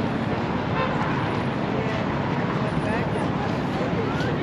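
City street ambience: steady road traffic noise with the voices of people talking close by.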